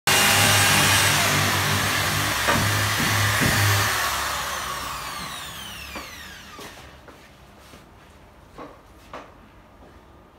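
Corded electric drill running against a wooden wall panel, drilling holes for termite treatment, then its motor winding down with a falling whine over several seconds. A few light knocks follow.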